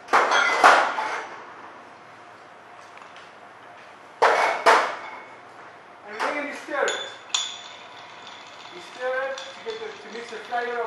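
Glassware and bar tools handled while an Old Fashioned is mixed: two quick double rattles, at the start and again about four seconds in, then a sharp glass clink with a brief ring about seven seconds in.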